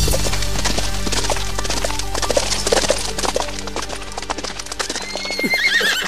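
Horses' hooves clip-clopping in quick succession over background music, with a horse whinnying near the end.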